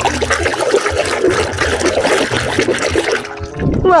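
Water sloshing and splashing in a basin as a hand scrubs plastic toy animals in soapy water; the splashing stops about three seconds in.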